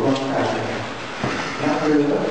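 Congregation chanting prayers in unison, held sung notes stepping from pitch to pitch, with a short break just past the middle.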